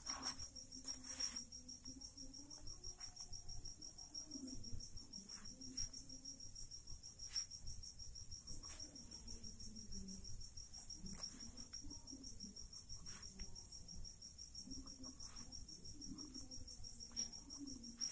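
Quiet background with a steady high-pitched insect trill throughout, a faint wavering low murmur underneath and a few soft clicks.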